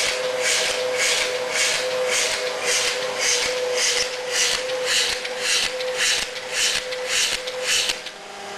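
Capsule rectifier station of a Schaefer Technologies LF-10 semi-automatic capsule filler running while it loads empty capsules into a size 00 filling ring: a regular hissing pulse about twice a second over a steady hum.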